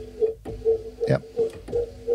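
A loop from the Sound Dust Loop Pool Boom & Bust Kontakt instrument playing: a pitched note pulsing about four times a second over a low thud.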